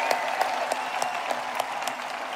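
Congregation applauding, a dense patter of many hands clapping, with a few faint voices of cheering; the applause slowly dies down.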